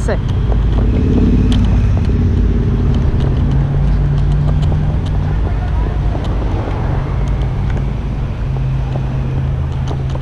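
Electric scooter ride: heavy wind and road rumble on the microphone with a steady low hum underneath.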